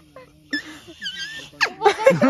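Leaf whistle: a green leaf held to the lips and blown, giving thin, high, wavering squeaks that slide in pitch, ending in a quick rising squeal. Voices and laughter start near the end.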